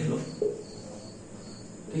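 Steady high-pitched insect chirping in the background, with a short word of speech at each end.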